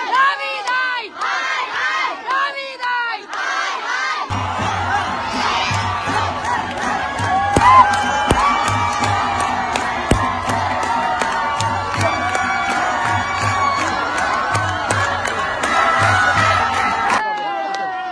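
A crowd cheering and shouting together. About four seconds in, a low pulsing beat of dance music comes in under the voices, with sharp clicks, and both cut off suddenly near the end.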